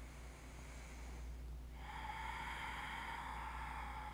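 A person's long breath out, starting a little before halfway through and lasting about two and a half seconds, over a faint low room hum.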